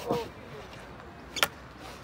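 A single sharp clack about one and a half seconds in: a field hockey goalkeeper's stick striking the hard hockey ball.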